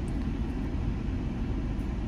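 A steady low rumble with no distinct sounds over it.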